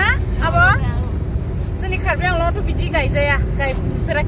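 Talking over the steady low rumble of a moving car, heard from inside the cabin.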